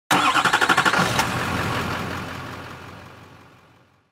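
An engine starting and running, with rapid pulsing about ten times a second for the first second, then fading away steadily.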